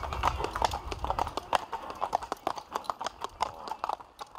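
Shod hooves of walking Old Kladruber horses clip-clopping on pavement in an uneven rhythm of several strikes a second, growing fainter toward the end.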